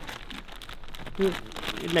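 Green plastic tarp crinkling and rustling as it is gripped and bunched up by hand around a small pine cone, to make an anchor point for tying a cord.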